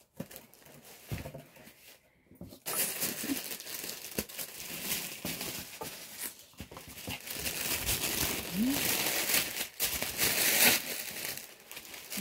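Tissue paper crinkling and rustling as a wrapped item is unwrapped by hand, the rustle starting about two and a half seconds in and going on almost to the end.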